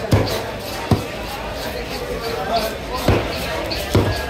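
Heavy cleaver chopping fish flesh on a thick wooden block: four sharp chops with a low thud, two near the start and two near the end, over steady background chatter.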